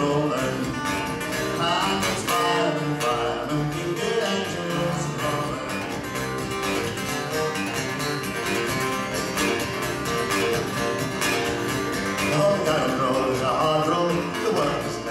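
Instrumental break on two acoustic guitars, one of them a long-necked acoustic bass guitar, strummed and picked at a steady folk-song tempo.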